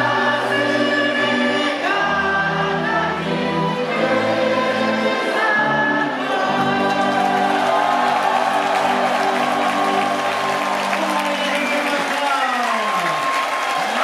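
Live band music: an electronic keyboard plays held chords under singing. From about halfway a crowd of voices joins in loudly. Near the end, voices slide downward in pitch.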